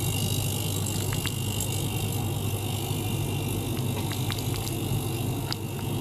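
Small ultrasonic cleaner running with its tank filled: a steady low buzzing hum over a hiss, with scattered faint ticks.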